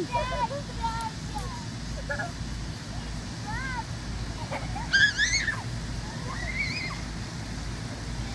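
Children's high-pitched shouts and squeals in play, short and scattered, with one loud high squeal about five seconds in, over a steady low rumble.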